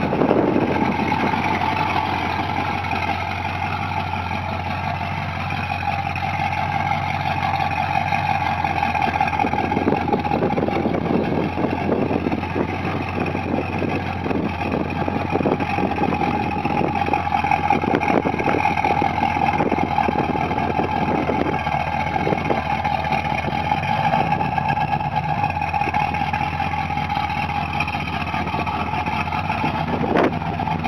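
Second-generation Chevrolet Camaro's engine idling and running at low revs as the car is driven slowly, a steady note with no hard revving.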